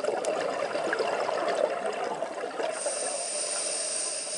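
Scuba diver breathing through a regulator underwater: a loud crackling rush of exhaled bubbles, joined near the end by a high steady hiss from the regulator.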